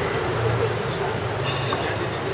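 Street traffic noise: a steady low engine rumble from vehicles, with voices of people in the street.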